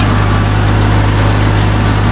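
Old International tractor engine running steadily and labouring under load as it drives a rotary hay tedder.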